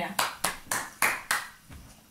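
Hand claps: about five in quick succession, roughly three a second, stopping about a second and a half in.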